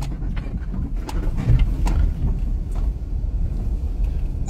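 Steady low rumble of a car, heard from inside the cabin, with a few faint ticks.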